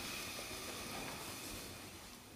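Faint, steady hiss of room noise, fading slightly toward the end.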